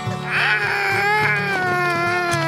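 A toddler crying: one long wail that starts about half a second in and slowly falls in pitch, over strummed acoustic guitar music.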